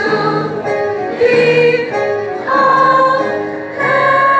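A group of voices singing a slow gospel-style song together, holding each note for about a second before moving to the next.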